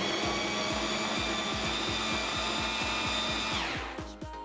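Electric mini food chopper's motor whining steadily as it purées avocado chunks, then slowing and stopping near the end.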